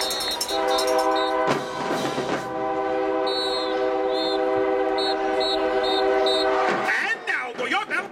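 Marching band brass holding a long, loud sustained chord, broken by a short burst of noise about one and a half seconds in, with short high notes repeated over the chord in the middle. The chord stops about seven seconds in and crowd voices follow.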